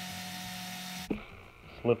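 Electric drill running at a steady speed, spinning the garden sprayer's repaired trigger pin held in its chuck, then switched off and stopping abruptly about a second in.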